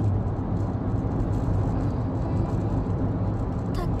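Steady low rumble of road and engine noise inside a car's cabin.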